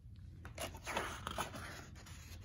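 Faint rustling and soft clicks of a picture book's paper pages being handled, over a low steady hum.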